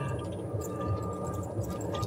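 Golf cart driving along: a low rumble with a faint, steady whine from the drivetrain.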